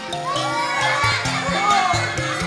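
Children in an audience shouting and calling out together over background music.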